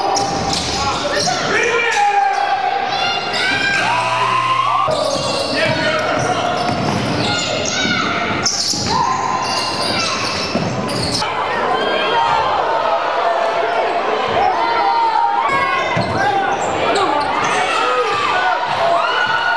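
Live high school basketball game sound echoing in a gym: sneakers squeaking on the hardwood, the ball bouncing, and players and spectators calling out. A steady buzzing tone sounds for about a second about four seconds in.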